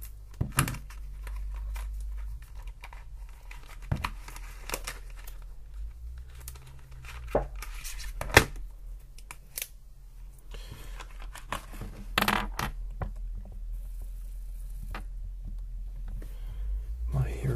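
Irregular small clicks and taps with patches of scratchy rustling, close to the microphone, as small desk objects such as a pen are handled; the sharpest click comes a little past halfway, and a denser scratchy stretch follows near the end.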